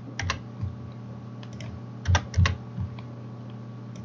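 Computer keyboard keys being typed, a handful of short sharp clicks in two brief clusters, as numbers are entered into fields.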